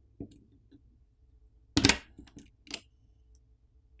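Light clicks and taps of a phone's small plastic bottom speaker assembly being lifted out and handled, the loudest about two seconds in.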